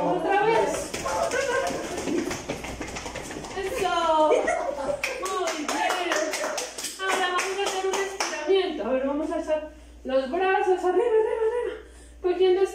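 A small group of adults singing a children's circle song unaccompanied, with rapid hand clapping through most of the first eight seconds; after the clapping stops, the singing carries on in held notes.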